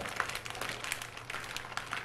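Clear plastic zip-top bag crinkling under the hands as it is squeezed and handled, a run of small irregular clicks that thins out near the end.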